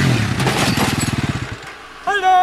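Sport ATV engine running with a rapid, even firing pulse that fades away over the second half.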